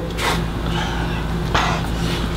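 A man breathing out hard through his mouth twice, short and then longer near the end, over a steady low hum.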